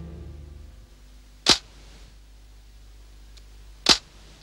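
Two sharp, loud snaps about two and a half seconds apart, a camera-shutter-like sound effect marking each new mugshot photo. A low musical chord fades out under them in the first second.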